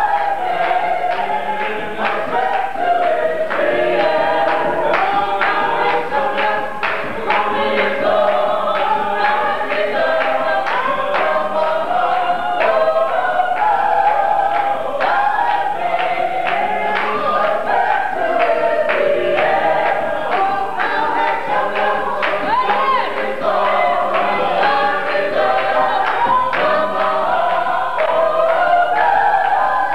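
Church choir of men and women singing together, with a steady beat of sharp strokes running under the voices.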